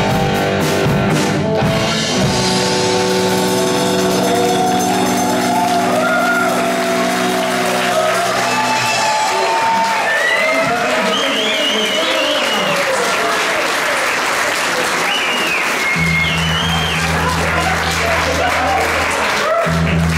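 A live rock band's final chord rings on and dies away over the first half, while the audience applauds and cheers. A steady low hum comes in near the end.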